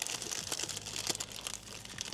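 Brown paper sandwich wrapper being unfolded and crinkled by hand, a continuous run of fine crackling paper noise.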